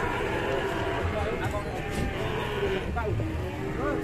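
Cattle mooing, with people talking in the background.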